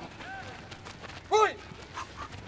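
A man shouting a short one-word command about one and a half seconds in, with fainter voices and the patter of players' feet moving on grass.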